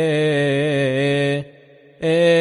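Solo male voice chanting a Coptic liturgical melisma, holding one long steady note. The note breaks off about one and a half seconds in for a brief breath, and the chant resumes at the very end.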